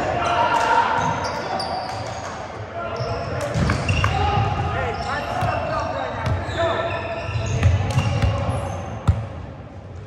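Players' voices talking and calling out in a large, echoing gymnasium, with a few sharp thuds of a volleyball bouncing on the hardwood floor, the loudest a little before the end.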